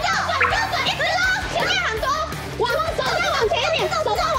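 Several excited voices shouting over one another, over a background music bed.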